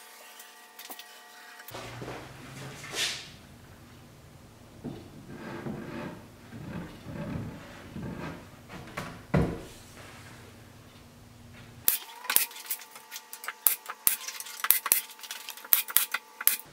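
MDF panels handled and set in place, with a couple of dull thumps, then near the end a quick irregular series of sharp shots from a pneumatic nail gun tacking the glued back panel of the box down.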